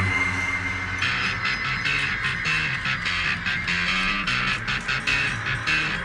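Early-1970s progressive rock recording playing: a held high note, then a steady beat comes in about a second in over a moving bass line.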